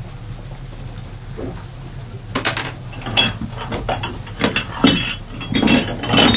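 Weight plates clanking and clinking in a bag as it is handled and set down on the deck, several clatters in the second half, over a steady low hum.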